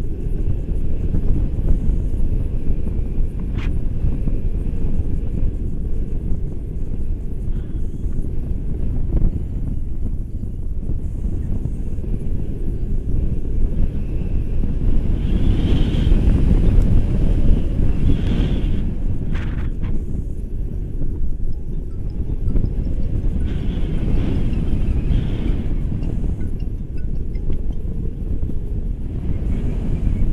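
Airflow buffeting a handheld camera's microphone in flight on a tandem paraglider: a loud, steady, low rumble of wind noise.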